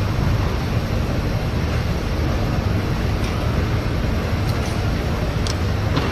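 Steady, low rumbling background noise of a large event venue, with no distinct events standing out.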